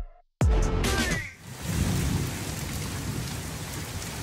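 Steady rain coming down on trees and a patio from about a second in, with a low rumble of thunder underneath.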